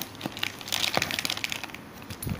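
Plastic packaging crinkling and a cardboard box rustling as a hand rummages inside the box, a run of short crackles and rustles that is busiest in the middle.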